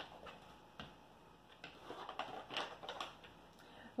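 Faint crinkling and scattered light clicks of a dog-treat package being picked up and handled, thickest in the second half.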